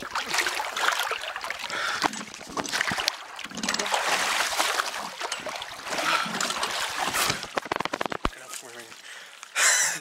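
River water splashing and sloshing close to the microphone as a swimmer dunks into cold water, mixed with wordless vocal sounds from the swimmer. A loud burst of voice comes just before the end.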